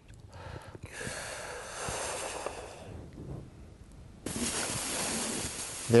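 A person blowing a long, steady stream of breath through the lips at a sheet of newspaper to hold it out, a breath-control exercise for the diaphragm. It comes as an airy rush for about two seconds, eases off, then a louder rush of breath starts about four seconds in.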